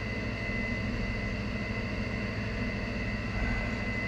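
Steady machine hum with a constant high, thin whine, unchanging throughout.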